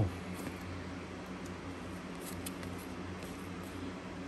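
Faint, scattered soft clicks and rustles of cardboard baseball trading cards being slid and shuffled through in the hands, over a low steady room hum.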